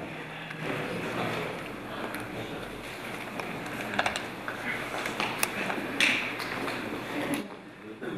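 Indistinct voices in a large hall, with a few sharp clicks and taps in the second half.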